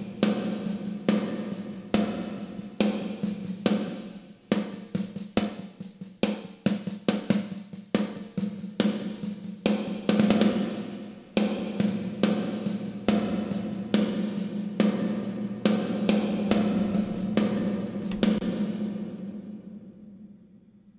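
Snare drum hits played back through a digital emulation of an EMT plate reverb, each hit followed by a plate-reverb tail. The hits come in an irregular pattern, and the reverb length changes as the plate and damper settings are stepped through. Near the end the playback stops and the last reverb tail dies away.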